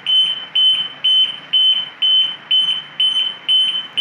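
Genset control panel's alarm buzzer sounding a loud, high-pitched beep about twice a second. It is raised because the panel's AC sensing has been lost after the supply behind it was switched off, leaving the panel running on its UPS.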